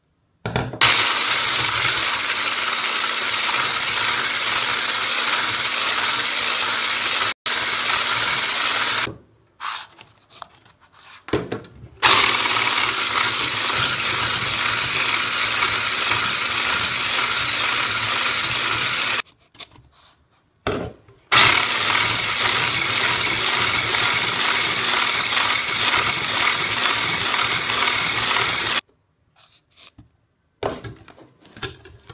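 Electric hand mixer running steadily in three long stretches with short pauses between, its beaters whipping egg whites and sugar in a bowl into meringue foam.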